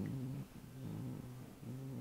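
A man's low, quiet voice drawn out in a held, hum-like hesitation sound.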